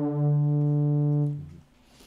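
Arturia Pigments software synthesizer playing an analog-engine pad patch: a single low, buzzy note with many overtones, held steady, then released about a second and a half in and fading out.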